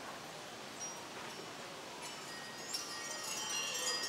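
Chimes tinkling over a soft, airy hiss. The ringing thickens and grows louder over the last two seconds.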